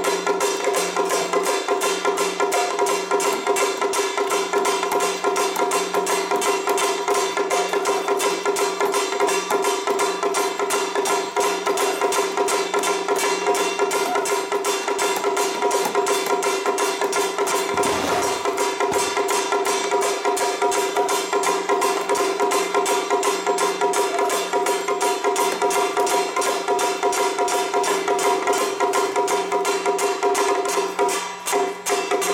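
Traditional lion-dance percussion: a drum and gongs struck in a fast, steady beat, with the gongs' ringing tones held underneath the strikes throughout.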